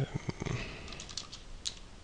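Typing on a computer keyboard: a few scattered keystrokes as a line of code is entered.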